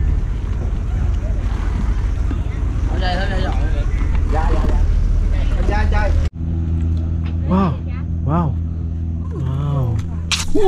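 Small passenger boat's engine running with a heavy low rumble, voices over it. About six seconds in it cuts off suddenly to a steady low hum with a few short exclamations.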